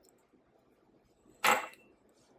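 A single sharp metallic clink with a short ring about a second and a half in, from a stainless steel measuring cup knocking against a glass mixing bowl or the counter.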